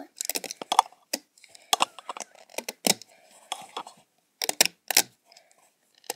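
Irregular clicks, snaps and short scrapes of rubber loom bands and the plastic loom being handled as a band bracelet is pulled off its pegs.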